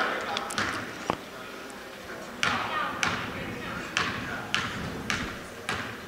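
A basketball bouncing on a hardwood gym floor about six times, starting a little over two seconds in and falling irregularly, each bounce echoing in the gym. The shooter is dribbling at the line before a free throw.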